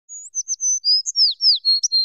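Bird chirping: a quick run of high whistled notes, several of them sweeping downward, about ten in all.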